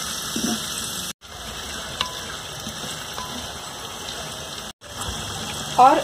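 Sliced onions sizzling in hot mustard oil in a clay handi, stirred with a wooden spatula. The steady sizzle cuts out completely for a split second twice, about a second in and near the end.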